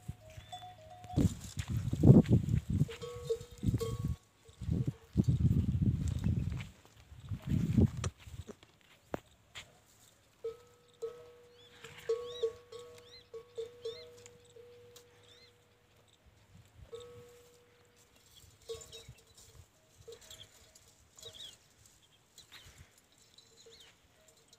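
Camels grunting in several low rumbling bursts during the first eight seconds, then a faint, thin ringing tone that comes and goes.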